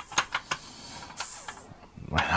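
Several sharp light clicks and taps in the first half second as a wheel-arch part is pressed and fitted by hand against a scale model car's chassis, then a short hiss a little past a second in.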